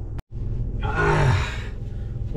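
A man's loud, breathy sigh that falls in pitch, lasting about a second, over a steady low hum. The sound cuts out for an instant just before it, at an edit.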